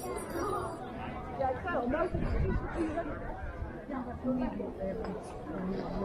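People talking and chattering, several voices overlapping, with no single voice clear.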